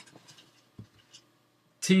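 A few faint keystrokes on a computer keyboard, scattered single clicks as letters are typed.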